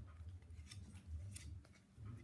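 Faint, scattered sharp clicks and taps from small puppies' claws and paws scrabbling on a tiled floor and a metal puppy gate, a few clicks spread over two seconds.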